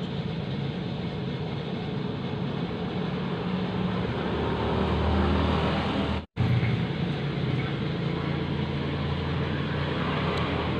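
Steady vehicle-engine rumble with hiss. It swells a little in the middle and breaks off for an instant just after six seconds.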